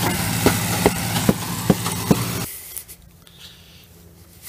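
Concrete pump's engine running steadily while pumping concrete, with five sharp knocks in an even rhythm about two and a half a second over it. The engine sound cuts off suddenly about two and a half seconds in, leaving only faint outdoor background.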